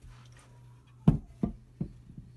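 Three dull knocks in quick succession, about a third of a second apart, starting about a second in: wooden staffs knocking against each other or the wall as they are handled.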